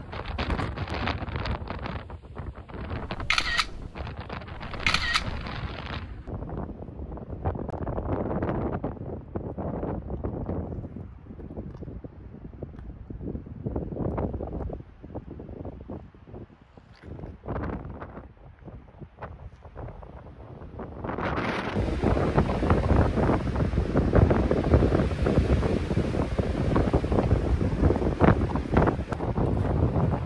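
Wind buffeting the microphone in uneven gusts, strong enough that she can hardly stand. About 22 seconds in it gives way to louder crunching footsteps on a snowy trail, with the wind still blowing.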